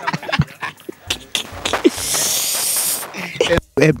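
A man laughing hard in short breathy bursts, with a long hissing exhale about two seconds in.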